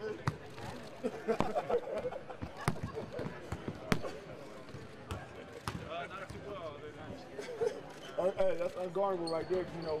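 Basketballs bouncing on a hardwood court in short, irregular thuds, with people talking in the background and a stretch of louder talk near the end.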